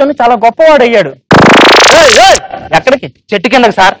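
A spoken line, then a loud comic sound effect lasting about a second: a rising pitch sweep with a wavering tone over it. More speech follows.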